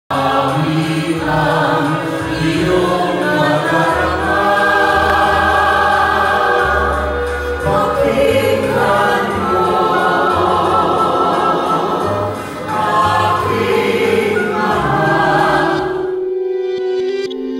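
A small mixed group of men and women singing a song together in harmony into handheld microphones, in phrases with a brief dip about three-quarters of the way through.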